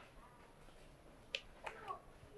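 Near silence, broken by a single sharp click about a second and a half in, then a faint, brief voice near the end.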